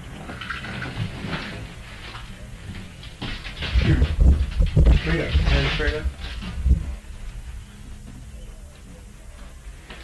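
Acoustic guitar being handled with a pocket knife as a slide, with low knocks and fumbling on the strings but no clear ringing note. The player can't get the tone out. A single word, "here", is spoken about halfway through.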